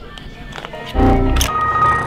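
Edited-in computer crash sound effect: a sudden burst about a second in, then steady electronic error tones held until the end, over low background music.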